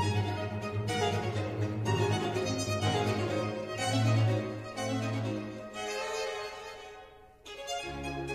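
Background music on bowed strings, with a violin carrying a slow melody over lower string notes. It dies away to almost nothing shortly before the end, then a new phrase begins.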